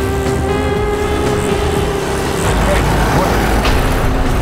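Dramatic background score with sustained held notes, over the steady low rumble of a car engine.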